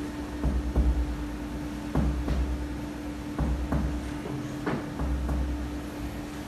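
Finger-on-finger percussion of a man's chest at medium strength: about four pairs of short dull taps, a pair every second and a half or so. The doctor is stepping along the fourth intercostal space toward the heart, listening for where the note shortens to mark the right border of relative cardiac dullness.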